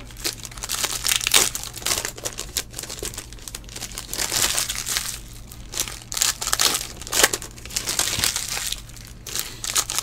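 Foil wrapper of a 2017 Panini Certified football card pack crinkling and tearing as it is pulled open by hand, in irregular rustles and crackles.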